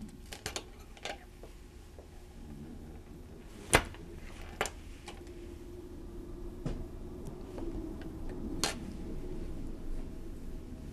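A few sharp clicks and taps from small fly-tying tools handled at the vise, the loudest about four seconds in, over a faint steady hum.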